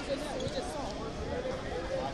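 Indistinct voices and calls from around a large sports hall, overlapping with one another, with a few dull thuds near the start.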